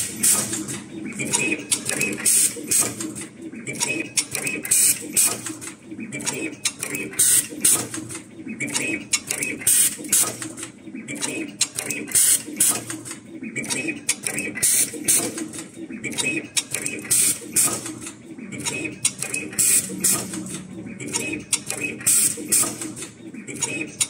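Automatic wire cutting, stripping and terminal crimping machine running through its cycles, with repeated sharp mechanical clicks and clacks. A song with a singing voice plays underneath.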